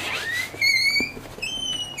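A person whistling: a rising glide into a held note, then a second, higher held note near the end.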